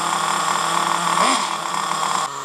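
Small 4.6 cc glow (nitro) engine of a four-wheel-drive RC monster truck running steadily just after starting, a high-pitched whine.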